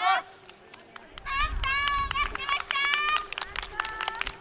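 Loud, drawn-out shouted calls from a performer's voice, the pitch held and bending. Scattered claps from a small audience sound throughout.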